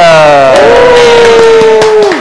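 A loud, drawn-out cheering call from voices. It slides down in pitch, holds steady for more than a second, and breaks off near the end.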